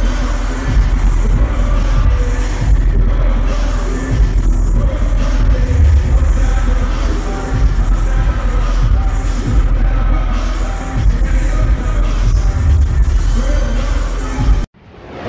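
Loud live hip-hop performance: a trap beat with heavy, pulsing bass hits under rapped vocals, heard through the venue's sound system.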